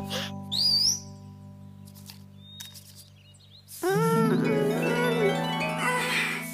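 Cartoon background music holding a sustained chord, with a short squeaky sliding sound effect about half a second in and a wavering, voice-like sliding tone entering at about four seconds.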